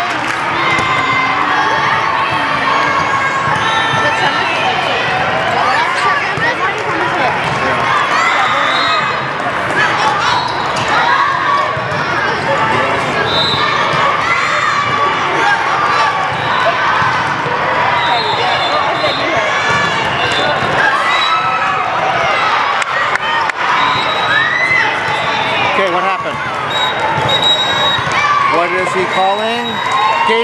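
Volleyballs being hit and bouncing, over a steady babble of many players' and spectators' voices and shouts in a large echoing hall.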